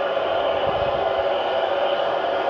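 Steady arena crowd noise heard through a TV broadcast, with a brief low rumble a little under a second in.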